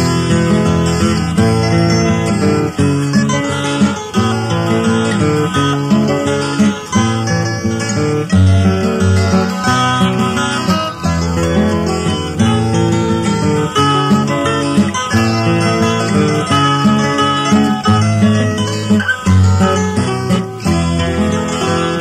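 Instrumental break in a country-folk song, led by acoustic guitar, with a steady run of changing notes over a moving low line and no singing.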